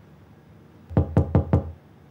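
Knuckles knocking on a white panelled door: four quick, evenly spaced knocks about a second in.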